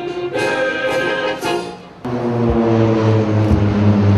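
Brass band music, which stops about halfway through and gives way to the steady sound of aircraft flying overhead: a low hum over a wide rushing noise.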